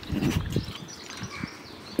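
A tiger cub growls low for about half a second while biting at a piece of raw meat held out through the wire mesh, then a few faint knocks follow.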